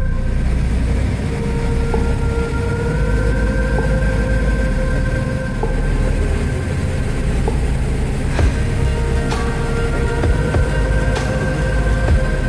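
Helicopter in flight, heard from inside the cabin: a loud, steady rush of rotor and engine noise with a faint steady whine, and a few light clicks in the second half.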